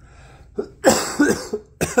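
A man coughing a few times in quick succession, starting about a second in.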